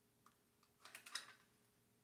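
Near silence, broken about a second in by a brief cluster of faint small clicks and rustles from handling things at the painting table.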